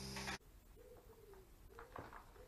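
A low hum cuts off abruptly about half a second in. A pigeon is then heard cooing in low, drawn-out notes, two or three times.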